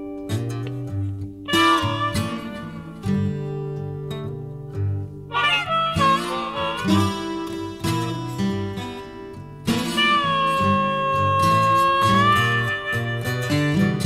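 Acoustic blues intro played on twelve-string acoustic guitar and slide guitar, with a plucked bass line and a long held note from about ten to twelve seconds in.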